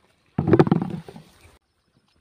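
Handfuls of tomatoes dropped into a plastic basin: a sudden thump with clatter, starting near half a second in and dying away within about a second.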